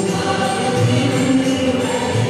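Devotional music with a group of voices singing long, held notes together.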